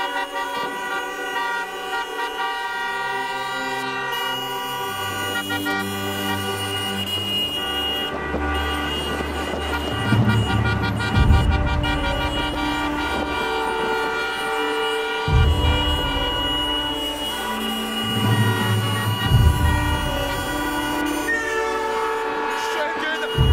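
Many car horns sounding together in a long, overlapping blare, with the noise of the cars driving.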